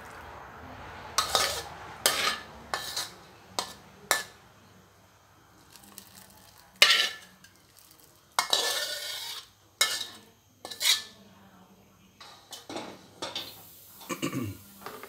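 A metal ladle scraping and knocking against a metal wok as curry is stirred and scooped: irregular clinks and scrapes, loudest about seven seconds in, followed by a longer scrape about a second later.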